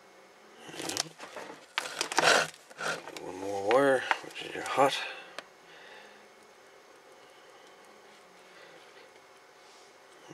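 Soldering iron tinning stripped wire ends: several short hisses of flux sizzling in the first half, with a brief wavering hum from a person about four seconds in, then only quiet room tone.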